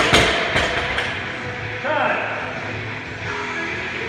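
Loaded barbell with rubber bumper plates dropped onto the gym floor: a loud impact, then a couple of smaller bounces about half a second and a second later.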